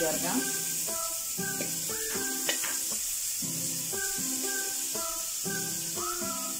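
Sliced carrots sizzling in hot oil in a pan and being stirred with a metal slotted spoon. Background music plays steady notes that change about twice a second.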